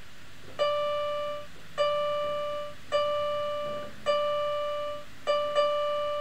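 A single keyboard note, the same pitch each time, struck six times at an even pace of about one a second, each held briefly and fading; the last two strikes come close together near the end.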